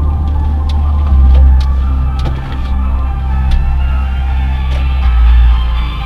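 Music playing inside a moving car's cabin over the low, steady rumble of the car driving slowly, with a few sharp clicks scattered through it.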